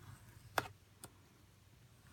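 Two short, light clicks about half a second apart as a paper strip is handled and set against a plastic scoring board.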